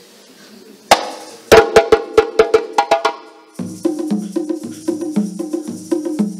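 A sharp strike, then a run of ringing strikes. From about three and a half seconds in, a djembe and stick-played dunun drums settle into a steady repeating rhythm, with the hiss of egg shakers over it.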